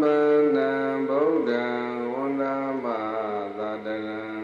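A Buddhist monk chanting into a microphone, one male voice on long drawn-out notes, the pitch stepping lower through the phrase.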